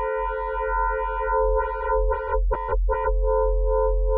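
FM synthesizer (Ableton Operator) holding one steady note, a sine carrier modulated at an 11:1 ratio, as the modulator's level is turned down. Its upper overtones thin out and flare again briefly, and the tone stutters a few times about two and a half seconds in.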